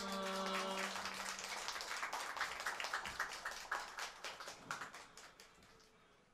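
A small audience clapping, thinning out and fading away over about five seconds.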